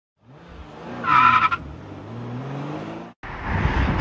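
A car engine revving with its pitch slowly rising, and a brief high tyre squeal about a second in. It cuts off abruptly near the end, followed by a low wind rumble on the microphone.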